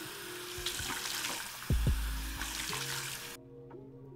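Bathroom tap running into a sink as cupped hands rinse face wash off, the water rush stopping abruptly near the end. Background music with a bass line plays underneath.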